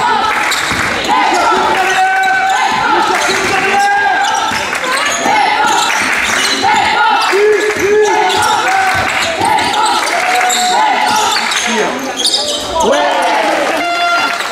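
Basketball dribbled on a sports hall floor, with short bounces heard through a steady run of voice sounds that hold and step between pitches.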